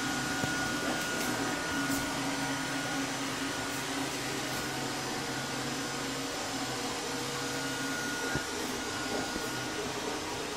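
bObsweep bObi robot vacuum running steadily as it travels across a tile floor: an even motor hum with a faint high whine over it.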